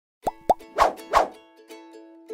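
Intro sound effects: two quick rising plops, then two whooshes, as light plucked-string music starts with steady held notes.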